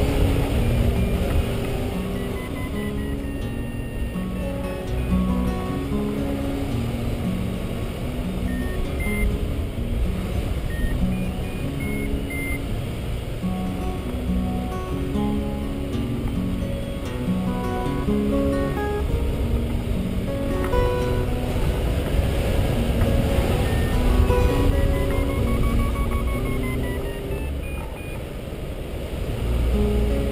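Fingerpicked acoustic guitar music playing throughout, over a steady low rush of wind on the glider-mounted microphone.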